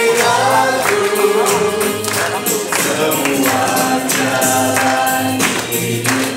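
A group of young voices singing an Indonesian church hymn together, with rhythmic percussion beating along.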